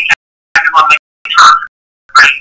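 Choppy fragments of a person's voice over a recorded call: two short bursts of speech-like sound, each cut off abruptly into dead silence between.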